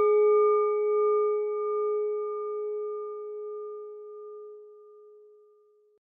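A single struck bell rings out: a steady low tone with several higher overtones that fades away over about five and a half seconds.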